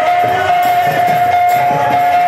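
Kirtan music: large two-headed barrel drums beaten by hand in a steady rhythm under one long held melody note.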